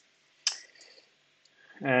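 One sharp computer mouse click about half a second in, as a settings checkbox is toggled, followed near the end by a man's hesitant 'uh'.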